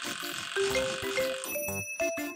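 Light background music. A serrated bread knife rasps as it saws into a soft white loaf during the first part, then a bell-like 'chiin' ding rings out about one and a half seconds in.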